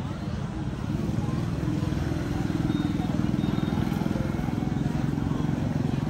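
A motorbike engine running close by, growing louder over the first couple of seconds and then holding steady, with people's voices in the background.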